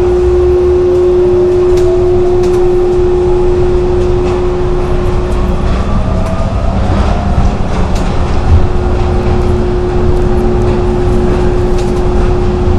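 O'Hare airport people mover, a rubber-tyred automated VAL train, running along its guideway. A steady rumble and a constant hum, which drops out around the middle and returns near the end, mix with a motor whine that rises slowly in pitch as the train picks up speed, and occasional short clicks.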